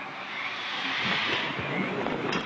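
A steady, even hiss with no voices in it.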